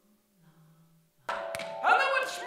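Live percussion music: a faint low wavering tone for the first second, then an abrupt loud entry of sustained ringing mallet-instrument tones with a sharp knock, and a voice coming in near the end.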